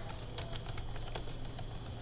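Computer keyboard being typed on: a quick, irregular run of keystrokes entering a line of text.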